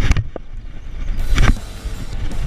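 Close-up knocks and rubbing from a hand grabbing and turning the action camera: a loud bump at the start and another about a second and a half in, with low rumbling between.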